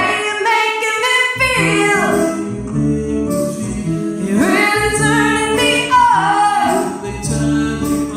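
Woman singing with a strummed acoustic guitar. Her voice slides up and down between notes in long swoops.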